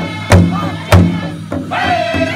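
Powwow big drum, a large hide drum struck in unison by several drummers with beaters: two heavy beats about 0.6 s apart, then the beats drop much softer. Near the end a high-pitched sung voice comes in over the soft drumming.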